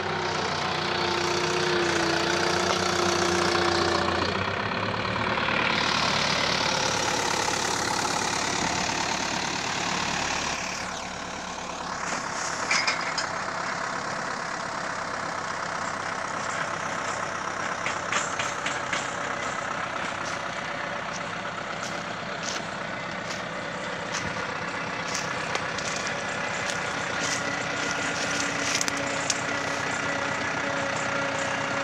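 SAME Argon 3 80 tractor engine running while it drives a rear-mounted PTO earth auger boring a hole in soil. The sound shifts several times in the first eleven seconds. From about twelve seconds in, scattered sharp clicks and knocks sound over the steady engine.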